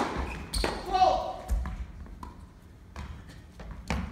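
Tennis ball struck hard by a racquet on a serve, with a second racquet hit about half a second later, echoing in an indoor hall. A short shout with falling pitch follows about a second in, then a few scattered ball bounces.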